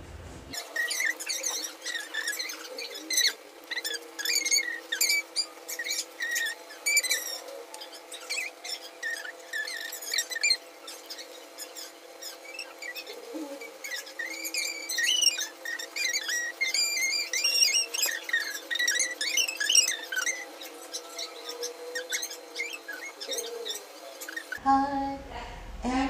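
Background music laid over the picture: held steady notes with many short bird-like chirps and twitters above them, starting about half a second in.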